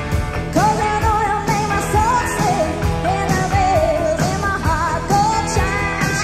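Live rock band playing with a woman singing lead, the guitars over a steady beat of about two strokes a second.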